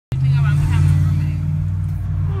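Steady low hum of a car heard from inside the cabin, with faint voices under it.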